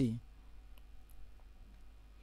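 Quiet studio room tone with a low steady hum and a few faint clicks about a second in, just after a voice trails off.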